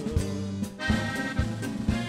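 Norteño band playing an instrumental passage: accordion over acoustic guitar, bass and drums, with a steady beat.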